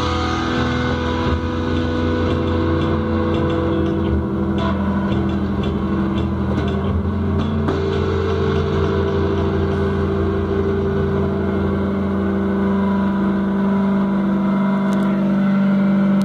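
Electric guitar and amplifier holding a sustained, droning tone, likely feedback as the guitar is left ringing. The pitch steps once about halfway through and the drone grows slightly louder toward the end.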